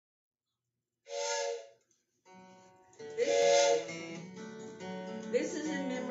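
Acoustic guitar and mountain dulcimer strings ringing with held notes, starting about two seconds in, while a voice speaks over them.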